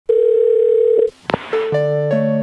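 A telephone dial tone holds steady for about a second and cuts off abruptly, followed by a short click. Then a keyboard intro tune begins with held chords.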